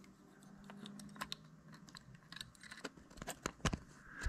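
Small clicks and light taps as an adapter loaded with AA batteries is slipped into the metal tube of a battery-powered illuminator. There is a quick run of sharper clicks about three seconds in.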